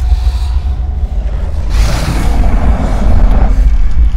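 Horror-film sound design: a loud, deep rumbling drone, with a rushing noise that swells in a little under two seconds in and dies away near the end.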